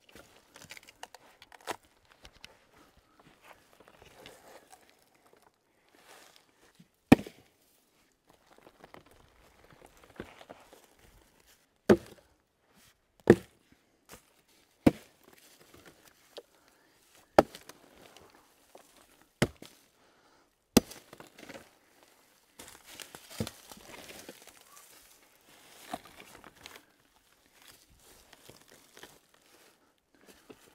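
Hard, sharp knocks of a hand tool striking a large log, about ten of them at uneven intervals, with footsteps and rustling in dry forest litter between them.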